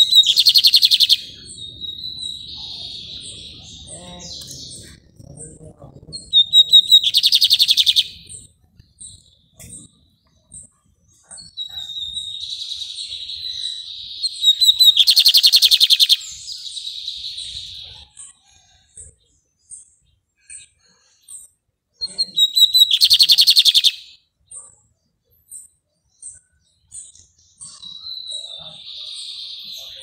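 Caged male lined seedeater (bigodinho) singing its rapid, metallic twittering song. Four loud bursts come about every eight seconds, with softer twittering between them.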